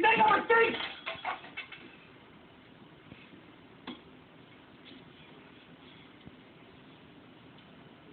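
Loud, strained voices shouting for about the first two seconds, then a hushed room with only a few faint clicks. The sound is a film's soundtrack heard through a TV speaker and re-recorded by a phone, so it is thin and cut off at the top.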